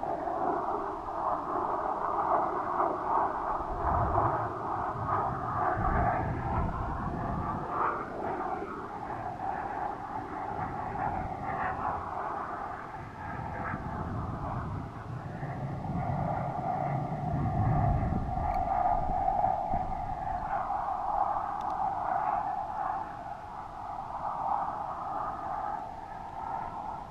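Airflow rushing over a weather-balloon payload's camera: a steady whistling hum that wavers in pitch. Low rumbling gusts come in twice, about four and fifteen seconds in.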